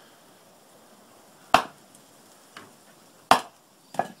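Axe blows striking wood on a chopping block: two sharp chops nearly two seconds apart, with a lighter knock between them and another chop at the very end.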